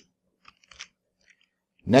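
A few faint, short clicks in an otherwise quiet pause, then a man's voice starts near the end.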